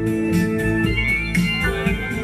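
Instrumental passage of live acoustic blues: an acoustic guitar played flat on the lap with a slide, holding sustained notes with small gliding bends over a repeating low bass note.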